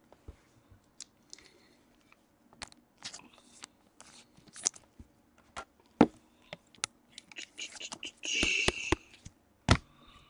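Gloved hands handling trading cards and their plastic holders: quiet, scattered clicks and rustles, with a longer crinkling rustle about eight seconds in and a few sharp knocks near the end.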